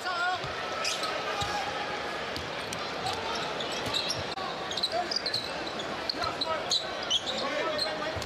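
Basketball game sound from the court: a ball being dribbled on the hardwood floor, with short high squeaks scattered through, over a steady murmur of the arena crowd.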